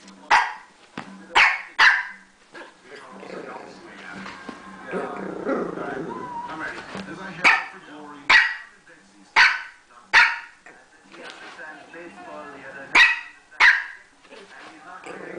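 Bichon frise puppy giving sharp, high play barks, about nine in all, mostly in quick pairs, while crouched in a play bow inviting a game.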